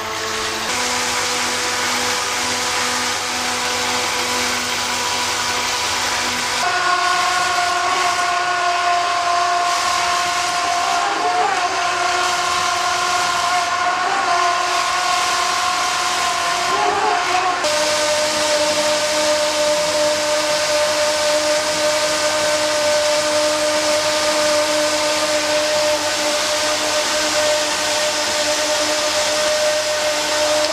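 Two Turnigy 2627 4200kv brushless motors driving twin 20 mm jet drives, running in water with a steady high whine over the rush of water from the jets. About seven seconds in the throttle steps up, and the whine jumps higher and louder as the draw climbs to around 40 A. It shifts slightly lower again after about 17 seconds.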